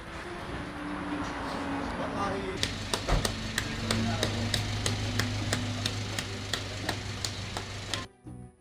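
Wet clay being slapped and patted by hand while a clay tannour wall is built up: sharp, regular knocks about two to three a second, starting about two and a half seconds in.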